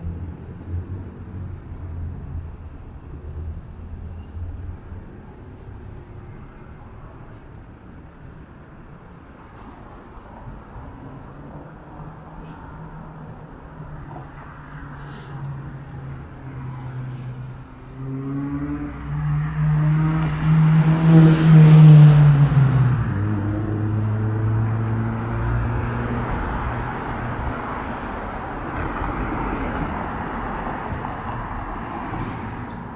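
City road traffic: a low engine rumble, then a louder vehicle passing close about 20 seconds in, its engine pitch dropping as it goes by, with tyre noise from other cars continuing after it.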